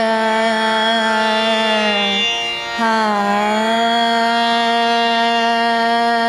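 A woman singing a slow alap of Raag Yaman in akar, on an open "aa" vowel. She holds long notes joined by gentle glides, with a brief break for breath about two and a half seconds in.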